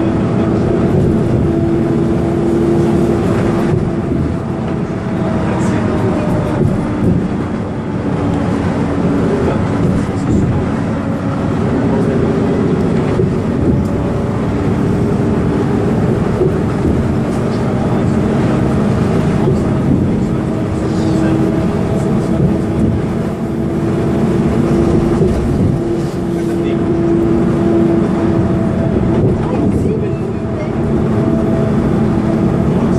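Inside an articulated Van Hool city bus cruising at highway speed: a steady drone of engine, drivetrain and tyres on the road, with a held hum that wavers slightly in pitch.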